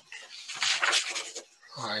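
A breathy, unpitched exhale lasting about a second, then a hesitant voice ('a, uh') begins near the end.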